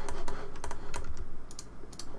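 Computer keyboard and mouse clicking in quick, irregular taps, as shortcut keys are pressed and the mouse is worked while 3D modeling.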